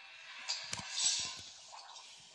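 Handling noise: rustling with a few light knocks, the loudest about three quarters of a second in, as the camera and plastic toy trains are moved about.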